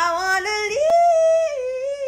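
A woman singing one long drawn-out note in a playful, yodel-like voice, sliding up a little under a second in, holding it, then easing down. A single short click sounds about a second in.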